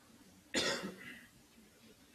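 A single sharp cough about half a second in, fading quickly, against faint room noise.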